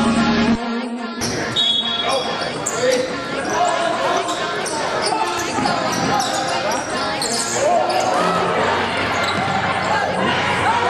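Live basketball game sound in a gym: a ball bouncing on the hardwood court amid players' and spectators' voices, with the echo of a large hall. Background music cuts out about a second in.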